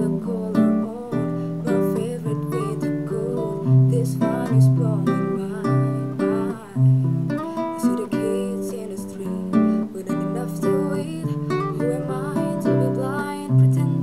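Music: an acoustic guitar strumming chords.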